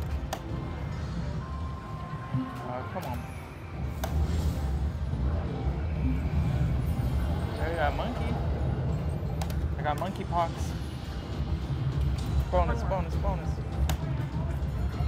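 Video slot machine playing its electronic jingles and chimes as the reels spin and pay a small line win. Underneath is a steady low casino hum.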